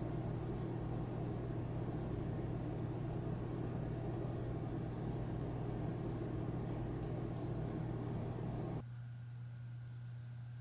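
Steady low hum with a rumbling hiss behind it, background room noise, which drops off suddenly near the end, leaving a quieter hum.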